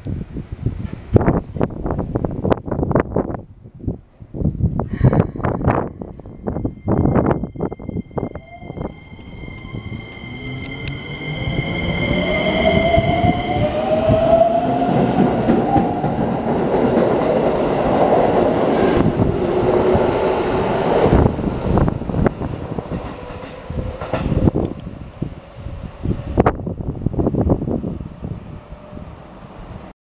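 Keikyu New 1000 series electric train pulling out of a station. Its traction motors whine, with high steady tones and then a pitch that rises as it gathers speed. The cars then rush past loudly with wheel clatter, fading away near the end.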